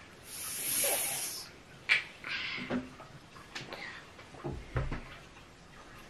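A drawn-out hissing 'sss', the phonics sound of the letter s, held for over a second, followed by quiet breathy mouth sounds, a click and a soft thump.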